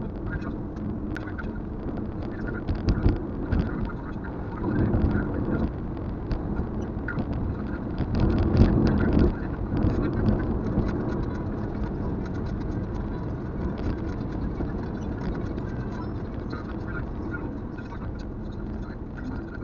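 Road and engine noise of a Kia Carens heard inside the cabin while driving, with small rattles and ticks. It swells louder a few times, most strongly about halfway through.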